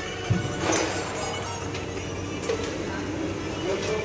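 Workshop background with music playing and faint voices, and a few light clinks and knocks scattered through it.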